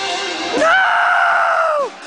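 A person screaming: one long, high scream that starts about half a second in, holds steady, and drops in pitch as it ends.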